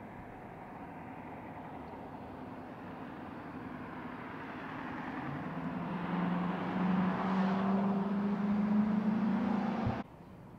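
A motor vehicle approaching and passing close by, its engine hum and tyre noise growing steadily louder over several seconds and loudest in the second half, then cut off abruptly.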